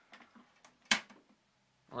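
Sharp VZ-2500 boombox's hinged front turntable door pushed shut by hand: a few faint clicks as it swings up, then one sharp click about a second in as it shuts, with small ticks just after.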